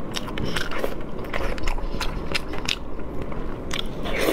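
Close-miked wet chewing and lip smacking on a mouthful of soft, fatty braised pork, a quick irregular run of sticky mouth clicks and smacks.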